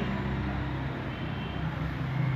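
A steady low motor-like hum over faint background noise, with no speech.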